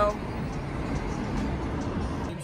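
Steady road and engine noise inside a moving car's cabin, mostly a low rumble.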